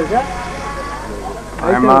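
A car's engine hums steadily inside the cabin. Near the end a loud car horn honk sets in suddenly.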